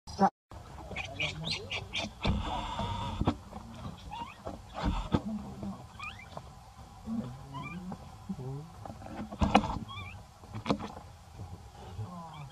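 Baby monkey giving short, high squeaking cries now and then, with a few sharp clicks and rustles; the loudest click comes right at the start.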